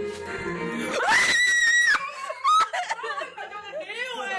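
A woman's loud, high-pitched scream of fright lasting about a second, then startled squealing and laughing. It comes from being startled in the dark by something taken for a person.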